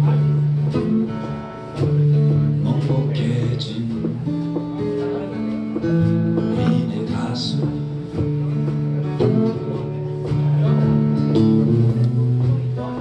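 Live blues played on an amplified acoustic guitar with a drum kit: a moving line of sustained guitar notes over steady drum and cymbal hits.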